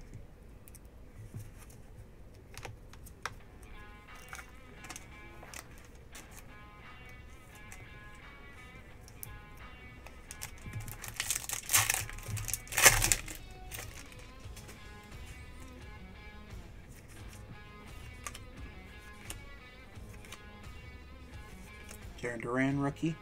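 Foil trading-card pack wrapper crinkling and tearing open, loudest between about 11 and 13 seconds in, with a few small clicks of cards being handled before it. Quiet background music plays throughout.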